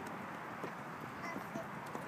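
A toddler's sandaled footsteps making a few light taps on a perforated metal playground deck, over faint outdoor background noise.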